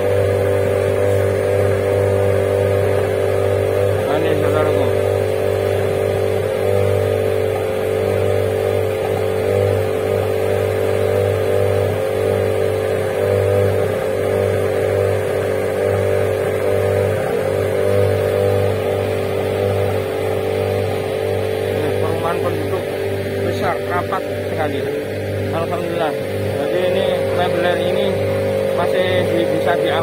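Fire engine's motor running steadily to drive its water pump as it draws water from the river: a constant, even engine drone.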